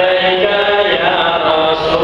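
Voices chanting together in long held notes that step from pitch to pitch, in the manner of Islamic devotional chanting.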